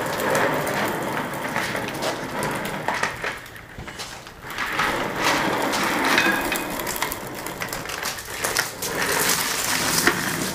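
Office chair casters rolling over rough concrete, a continuous grinding rattle with small clicks and knocks. It eases off briefly around the middle.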